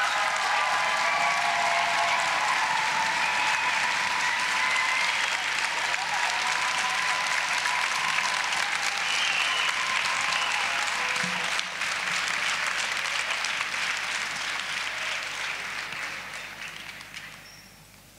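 Audience applauding, with some cheering voices in the first few seconds; the applause dies away over the last few seconds.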